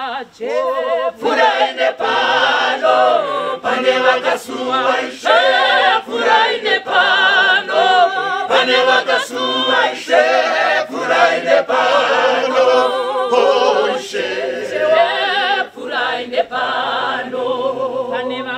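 Mixed church choir singing a cappella, men's and women's voices in harmony, with soloists on handheld microphones leading: a woman at first, then a man.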